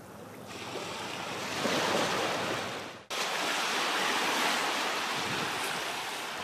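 Small waves washing up over a sandy beach and draining back: a hiss of water that swells and fades, breaks off abruptly about three seconds in, then carries on as a steady surf wash.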